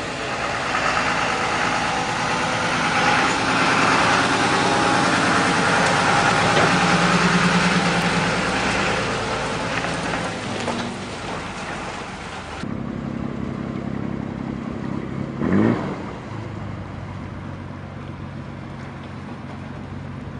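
Fire engine's diesel engine running as the truck pulls away close by. After a sudden cut it gives way to a quieter, steady engine hum, with a short, loud rising whine about three-quarters of the way through.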